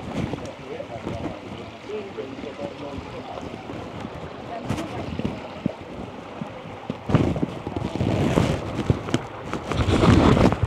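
Shallow gorge stream running over rock, with footsteps on wet stone and faint distant voices. From about seven seconds in, wind gusts rumble heavily on the microphone.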